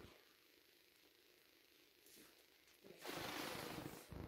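Blue painter's tape pulled off its roll in one long rip, starting about three seconds in and lasting about a second.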